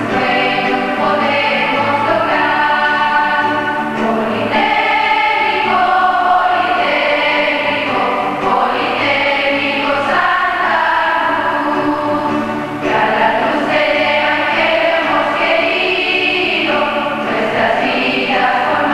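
Large choir of schoolgirls singing a school hymn, the sung notes held and changing pitch without a break.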